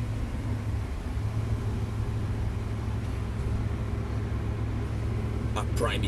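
A car's engine and road noise heard from inside the cabin while driving: a steady low drone with one even engine note.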